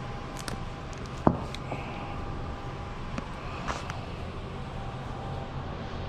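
Steady low background noise of an auto repair shop, with a few light clicks and one sharp knock a little over a second in.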